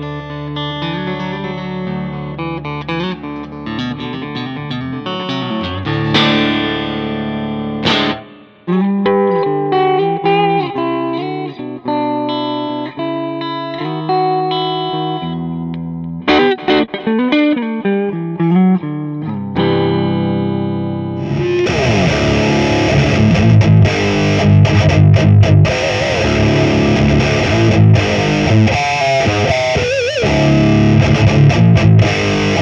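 Electric guitar played through BIAS FX amp-modelling software. For about the first twenty seconds, separate picked notes and chords ring out clearly. Then a dense, heavily distorted high-gain riff takes over for the last third.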